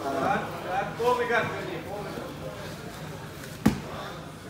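Men's voices calling out, then one sharp slap on the grappling mat near the end.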